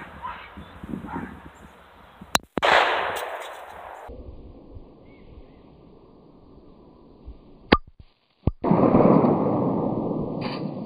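A 9mm pistol firing at a stainless metal tumbler: short, sharp cracks, the loudest about three-quarters of the way through. The round goes right through the tumbler.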